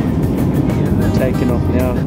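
Jet airliner cabin noise, a steady low rumble of the engines, with music and a voice over it in the second half.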